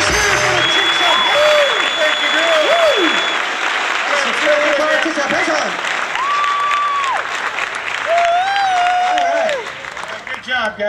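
Audience applauding and cheering, with whoops and shouts, as the band's last note stops right at the start; the applause thins out near the end.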